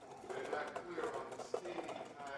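Wire whisk beating egg yolks in a stainless steel pan over a double boiler, a quick run of small metallic ticks and scrapes as the yolks are worked toward a ribbony sabayon. A faint voice asking a question from away from the microphone is heard with it.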